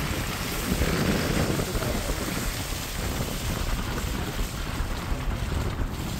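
Steady rumble and hiss of a car driving along a snowy mountain road, heard from inside the cabin, with wind noise.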